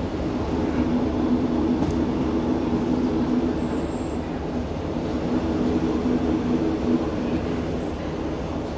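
Diesel passenger train heard from inside the carriage: a steady low rumble of the running train with a constant engine hum. The hum fades back about seven seconds in.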